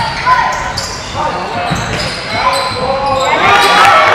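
Game sounds of an indoor basketball match: a ball bouncing and sneakers squeaking on the wooden court, mixed with players' shouts in an echoing hall, growing busier near the end.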